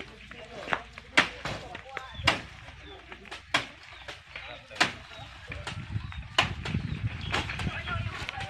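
A series of sharp, irregular knocks and clacks, typical of sugarcane stalks being tossed up and landing on the stacked load of a cane truck. A low rumble comes in near the end.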